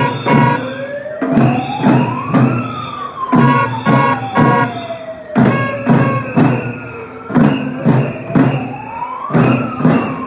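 Drumbeats in a steady rhythm, with a siren-like wail that rises for about two seconds and then falls slowly, heard twice, over a marching crowd.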